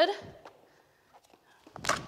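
Handling of clear plastic food cups on a table: a few faint clicks, then a short, sharp rustling clatter near the end.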